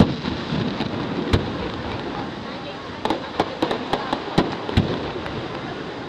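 Aerial firework shells bursting: a bang at the start and another just over a second in, then a rapid run of sharp cracks and booms between about three and five seconds in.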